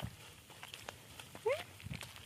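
Long-tailed macaque giving a single short squeak that rises in pitch about one and a half seconds in, with a few soft knocks around it.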